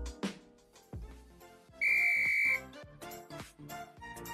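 Edited-in sound effect: a short, shrill whistle blast of under a second about two seconds in, over quiet background music that turns light and tinkly after it.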